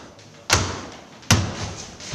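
Two loud, heavy thuds less than a second apart, each fading out quickly after the hit.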